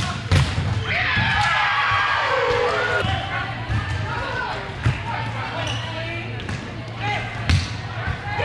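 Indoor volleyball rally: a few sharp smacks of hands striking the volleyball, seconds apart, amid players' high-pitched shouted calls echoing in a large gym, over a steady low hum.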